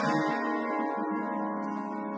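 Psychedelic rock track in a quiet break: held, ringing guitar chords with the drums and bass dropped out.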